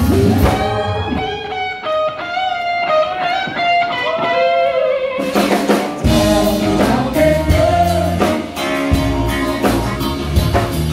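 Live blues-rock band music. For about the first five seconds a lead guitar plays bending phrases over sparse backing, then drums and bass come back in and the full band plays on.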